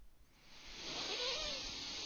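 A long audible breath, a rushing hiss with a faint wavering whistle in it, starting about half a second in and running for about two seconds.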